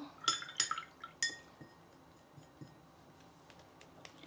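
Three light clinks with a short bright ring, the third ringing longest, followed by faint handling ticks.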